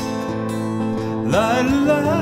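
Cole Clark 'Fat Lady' acoustic guitar: a chord strummed at the start and left ringing. About a second and a half in, a male voice slides up into a sung 'lie-la-lie' note over it.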